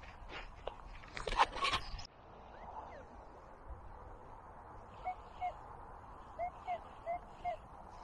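Rustling and knocks of handling in the first two seconds. From about five seconds in, a metal detector gives short beeps, several in quick succession, as its coil is swept over a target reading 61.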